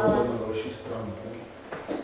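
A person speaking for about a second in a small room, then a single sharp knock shortly before the end, like a hard object striking a table or a piece of furniture moving.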